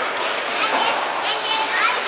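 High-pitched children's voices shouting and calling over one another in an ice rink, over a steady wash of background noise.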